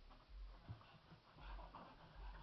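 Faint sounds of a pug breathing and moving about, with a couple of soft low thumps.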